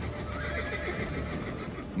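Horses whinnying in several wavering calls over a low rumble, as Pharaoh's chariot horses are overwhelmed by the sea.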